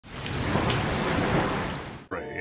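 Heavy rain falling steadily, with a low rumble underneath; it fades in at the start and fades out near the end.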